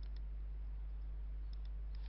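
Computer mouse button clicks: a quick press-and-release pair at the start and two or three more short clicks near the end, over a steady low electrical hum.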